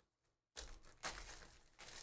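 Cellophane shrink-wrap crinkling and tearing as it is pulled off a trading-card hobby box, starting about half a second in with a sharper burst of rustle about a second in.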